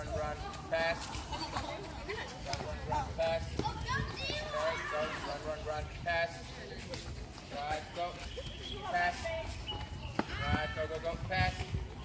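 Children's voices chattering and calling out as a group, with running footsteps on pavement.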